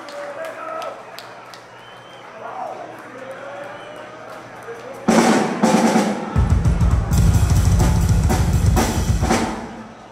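Live drum kit played briefly between songs. After a quieter stretch of room chatter, a burst of drum hits starts about five seconds in, turns into a fast, heavy kick-drum roll for about three seconds, then stops shortly before the end.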